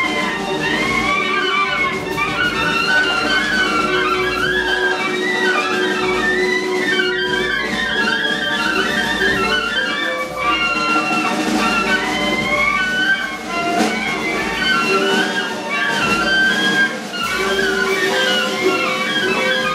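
Large free-jazz ensemble playing live: clarinets and saxophones weave many overlapping, wavering lines at once over a long held low note, a dense collective improvisation.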